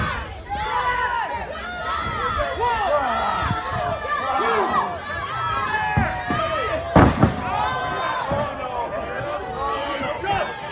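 Wrestling crowd shouting and cheering throughout, many voices overlapping. About seven seconds in, a single loud slam, a body hitting the wrestling ring's canvas from a top-rope move, rises above the crowd.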